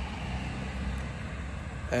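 Steady outdoor background noise: a low rumble with a fainter even hiss above it.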